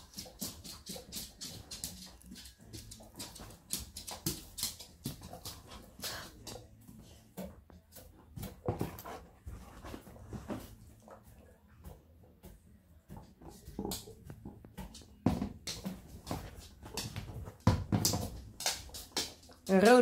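Husky-type dog playing rough on a couch, mouthing and tugging at a person's hand, with short vocal sounds from the dog and scattered rustles and clicks of the blanket and mouth throughout.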